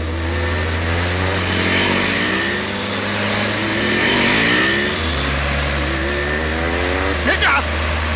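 Car engine accelerating, its pitch climbing again and again as it revs up through the gears, over a steady low hum.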